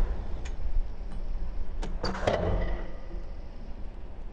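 BMX bike riding a concrete bowl: its tyres roll on the concrete with a low rumble, with a few sharp clicks and a louder clatter of knocks about two seconds in as the bike strikes the concrete.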